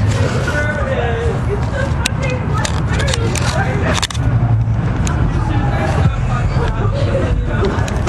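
Indistinct voices talking, not close enough to make out words, with several sharp clicks and knocks scattered through and a steady low rumble underneath.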